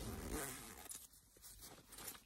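Zipper on a Kipling handbag being pulled, a short rasp in the first second, followed by fainter rustling as the bag is handled.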